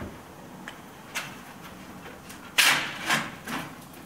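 A stainless steel flue pipe being handled and set onto the pipe section below it: a light knock about a second in, then a short, loud metal-on-metal rub about two and a half seconds in as it slides into place, followed by two softer knocks.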